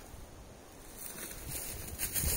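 Quiet woodland background with faint rustling, getting a little louder with a few soft rustles in the second half.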